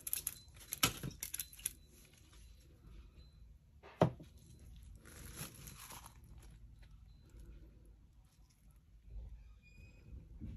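A hand spray bottle of alcohol misting over wet resin: several quick sprays in the first two seconds, then a sharp knock about four seconds in, followed by faint handling noise.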